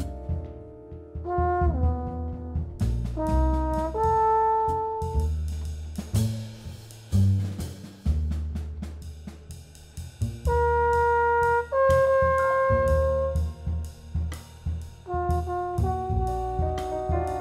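A live jazz band playing: a brass instrument plays a melody of long held notes over drum kit and bass.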